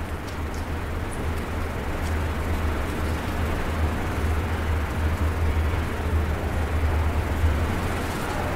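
Steady low hum and hiss of room background noise, with a few faint keyboard clicks as a command is typed on a laptop.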